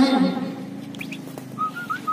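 A series of short whistled notes at a steady middle pitch, one of them rising, heard about a second and a half in after a man's speech breaks off.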